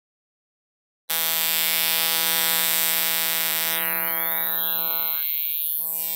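Synthetic sound made by converting an image into audio with an image-to-spectrogram converter. It is a steady pitched drone rich in overtones with a hiss on top, and it starts suddenly out of silence about a second in.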